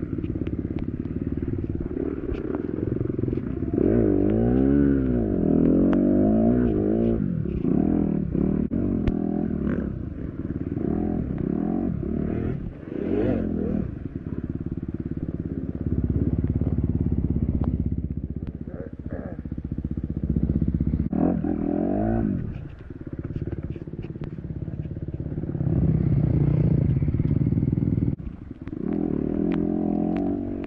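Dirt bike engine revving up and falling back over and over as the throttle is worked, sounding muffled. Short knocks and clatter from the bike running over rough ground.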